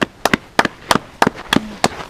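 A small group of people clapping sparsely and unevenly, about five claps a second with some in close pairs.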